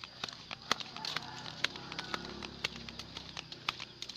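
Footsteps in sandals on a dirt footpath, an irregular run of taps and scuffs several times a second, over a steady high-pitched drone in the background.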